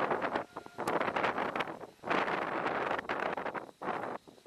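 Wind buffeting the microphone in gusts: loud rushing surges about a second long, broken by brief lulls.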